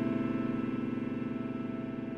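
Piano holding a sustained A minor chord (A–C–E spread across both hands), its notes ringing steadily and slowly fading away with no new notes struck.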